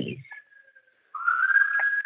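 A single high whistling tone, faint at first, that comes in louder about halfway through, slides up a little and then holds steady.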